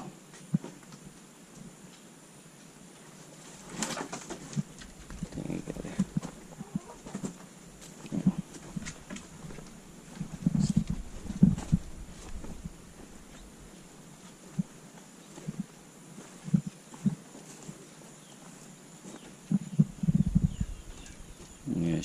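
Domestic chickens clucking now and then, among scattered knocks and low thumps, the loudest in the middle and near the end.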